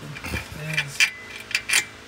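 A few sharp metallic clicks and clinks, about three in the second half, from hardware and tools being handled while cables are hooked up to the golf cart's electric motor.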